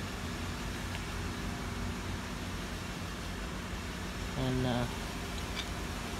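Steady low mechanical hum, even in level, like a fan or ventilation running.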